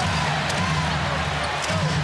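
Live basketball game sound: sneakers squeaking on the hardwood court and a ball being dribbled, over a steady arena crowd din.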